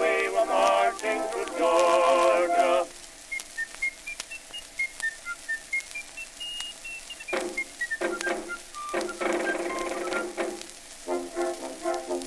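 Early acoustic gramophone recording of a male vocal duet with band accompaniment. The singers hold the end of a chorus line, then a high, whistle-like instrumental line plays a quick run of short notes that climbs and falls, and the band and voices come back in for the next verse.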